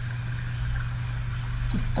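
A steady low hum with low rumbling room noise; a woman's voice begins near the end.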